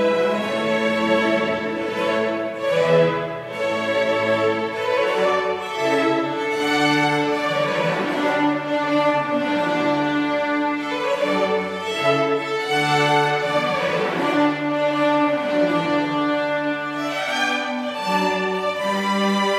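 A string chamber orchestra of violins and cellos playing, with bowed notes moving continuously through a piece of classical music.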